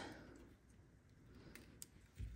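Near silence: room tone, with two faint clicks near the end.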